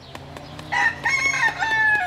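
A rooster crowing once: a long call that starts just under a second in, steps down in pitch and trails off falling at the end.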